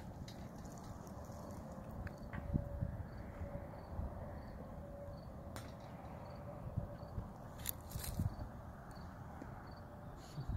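Quiet outdoor ambience on a handheld phone microphone: a steady low rumble of wind and handling, a few sharp clicks late on, and a faint high chirp repeating about every half second.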